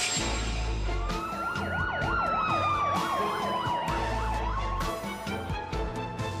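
An emergency siren over music with a deep beat. From about a second in, a fast warbling siren of about three rises and falls a second plays together with a slower tone that rises and then falls, and it stops at about four and a half seconds.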